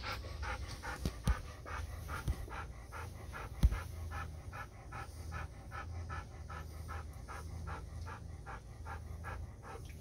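Golden retriever panting after a walk: quick, even breaths, about three a second. A couple of sharp knocks cut in, the loudest about four seconds in.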